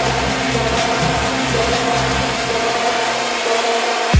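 Electronic dance music from a progressive house and techno DJ mix: a dense, hissy synth texture over sustained chords and a pulsing bass. The bass drops out near the end.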